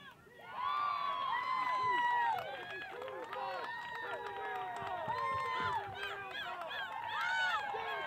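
Spectators yelling and cheering during a live play, many voices shouting over one another. The shouting starts suddenly about half a second in and stays loud throughout.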